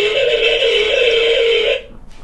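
Audio feedback howl through a PTZ CCTV camera's two-way-talk speaker: one steady tone held for under two seconds that cuts off suddenly near the end. It is caused by the phone and the camera being too close together.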